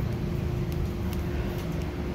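Steady low background rumble with a faint steady hum tone, and a few faint ticks.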